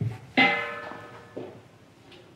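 A short burst of music: a plucked chord strikes about half a second in and rings out, fading over about a second, with a softer note just past the middle.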